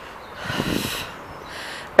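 A short, breathy exhale or sniff close to the microphone, lasting under a second and starting about half a second in.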